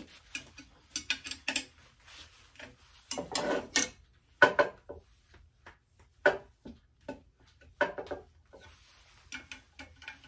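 Scattered metal clinks and knocks from a wrench working a clamp bolt while the steel tubing of a hollowing rig is twisted and shifted on a stone tabletop. There are about a dozen separate strikes, with a short cluster about three seconds in and the sharpest knock near the middle.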